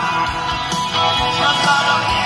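Live rock band playing in a theatre, with guitar, keyboards and a steady drum beat, heard from among the audience.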